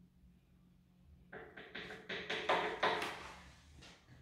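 A utensil clinking repeatedly against a glass, about four clinks a second, starting a little over a second in and stopping just before the end.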